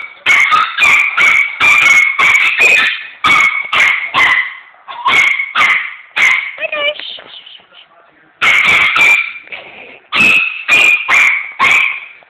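Chihuahua barking rapidly in quick runs of short, high yappy barks at a vacuum cleaner nozzle that is pushed at it, not switched on. About seven seconds in a brief whine, a pause of a second or so, then the barking starts again.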